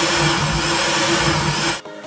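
Countertop electric blender running at one steady speed, blending milk and fruit into a drink, then cutting off suddenly near the end.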